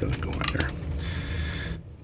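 A plastic zip-lock bag crinkling, with small metal screws clicking against each other as fingers rummage through it, over a steady low hum.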